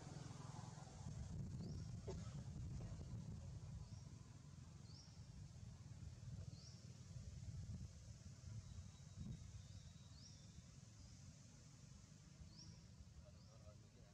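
Faint outdoor ambience: a steady low rumble with short, high, rising chirps repeating every second or two.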